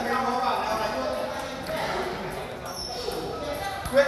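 Table tennis balls clicking off bats and tables amid a hubbub of men's voices, with one sharper, louder hit near the end.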